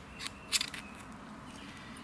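Ferro rod scraped hard along the ground spine of a Silky Gomboy folding saw to throw sparks into birch bark tinder: two quick rasping strikes about half a second in, the second louder.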